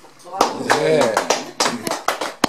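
A small audience clapping and a voice calling out, starting about half a second in, as applause for the accordion tune that has just ended.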